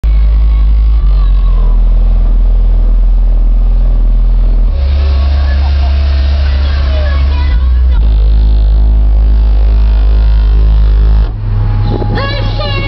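A car audio system of four 15-inch Fi BTL subwoofers driven by Sundown SAZ-3500D amplifiers, playing very loud sustained bass notes that step to a new pitch every few seconds.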